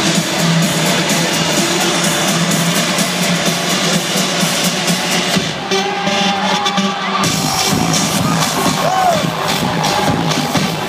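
Loud live electronic house music played over a concert PA and recorded on a phone, with the crowd cheering under it. The fuller sound with deep bass comes back about seven seconds in.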